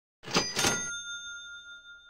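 Cash register "ka-ching" sound effect: two quick metallic strikes about half a second in, followed by a bell ring that fades away slowly.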